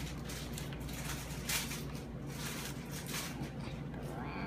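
Paper packaging rustling and crinkling in a pair of hands as a small folded packet is unfolded, in a few irregular rustles, the loudest about a second and a half in, over a steady low hum.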